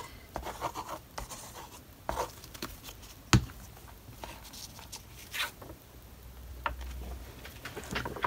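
Small handling sounds at a craft table: paper rustling and light scratching as a glued sheet of old book paper is handled and lifted, with one sharp tap about three and a half seconds in.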